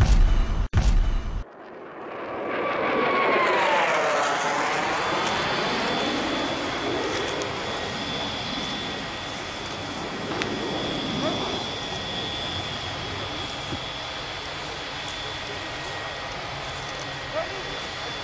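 A short, loud logo sting, then a turbine engine running with a wide rushing noise and a steady high whine; the noise swells and sweeps in pitch during the first few seconds before settling.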